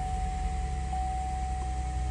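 Steady low rumble and hiss inside a parked car's cabin with the engine idling, and a faint steady high tone throughout.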